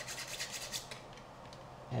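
Nail file rubbing back and forth across the edge of a carbon fiber drone arm in quick scratchy strokes, sanding down and smoothing the super-glued delaminated edge; the strokes stop about a second in.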